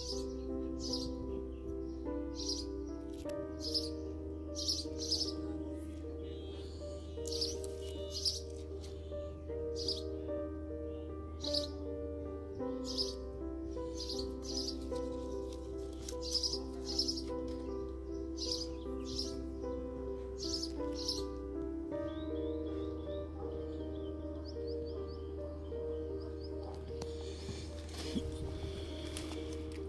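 Instrumental background music of sustained chords over a low bass note that shifts every nine seconds or so, with short high chirps recurring throughout.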